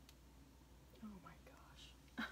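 Near silence, with a faint click at the start, then a woman's voice, very quiet and indistinct, from about halfway through.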